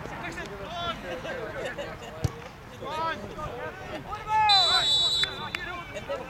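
Players shouting on a football pitch, with a single sharp knock about two seconds in. Near the end a referee's whistle gives one steady blast of under a second, the loudest sound, stopping play as a player goes down.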